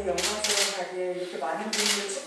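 A woman speaking into a handheld microphone, with sharp hissy consonants. The tail of background music ends about half a second in.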